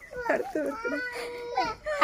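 A young child crying among voices, with one held wailing note about halfway through.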